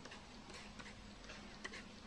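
Faint, irregular light ticks of a steel palette knife working acrylic gel into red acrylic paint on a palette.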